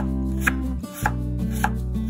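Chef's knife slicing Korean radish (mu) on a wooden cutting board, a crisp cut about every half second, over background music with steady held bass notes.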